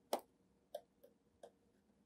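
Faint clicks of a stylus tapping a tablet screen while handwriting: four short taps, irregularly spaced, the first the loudest, just after the start.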